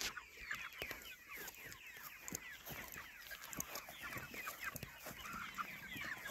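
A flock of chickens in chicken tractors calling: a steady stream of many short, overlapping clucks and peeps.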